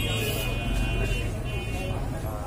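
Market street traffic: a steady low engine rumble from vehicles, with a high-pitched steady tone at the start and again briefly near the end, and faint voices underneath.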